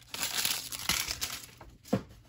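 A baseball card pack wrapper crinkling as it is handled, with two light knocks against the table, one about a second in and a louder one near the end.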